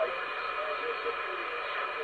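Upper-sideband receiver hiss from an AnyTone AT-6666 10/11 m radio's speaker between transmissions, with a few faint steady whistles in the band noise. The last word of a station's over is heard at the very start.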